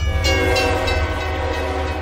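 A sustained horn-like chord of many steady tones, starting suddenly and held evenly, over a low steady hum.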